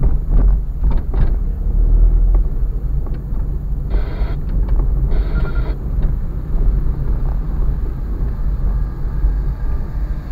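Low, steady rumble of a car driving slowly over a rough, broken road, heard from a dashcam inside the cabin. A few sharp knocks come in the first second and a half, and two short hissing noises about four and five seconds in.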